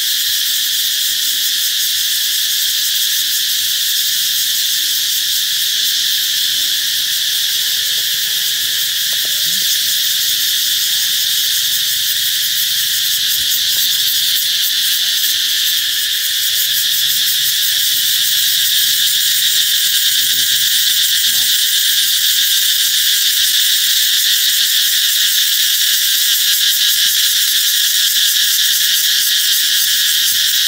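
A chorus of many cicadas calling together in the trees: a loud, steady, high-pitched buzzing drone that swells slightly about two-thirds of the way through.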